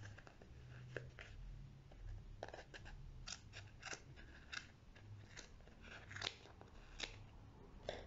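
Small scissors snipping through strands of acrylic yarn wound around a plastic box, cutting the loops into fringe. A series of faint, irregular snips, most of them in the second half.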